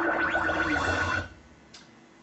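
A musical sound effect from the coursebook's recorded listening track, played through the whiteboard's speakers: a held high tone over a lower tone that bends upward. It cuts off abruptly a little over a second in as the audio is paused, leaving near quiet with one faint click.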